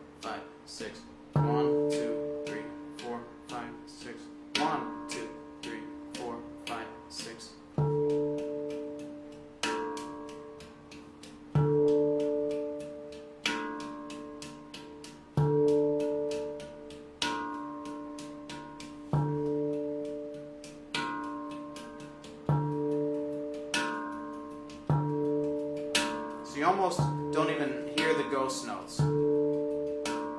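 Handpan played in a steady six-count triplet groove: an accented low ding note as the bass and an accented slap on the rim as the snare, with very soft ghost-note taps filling the space between. The strong strokes land about every two seconds, and the steel notes ring on under the taps.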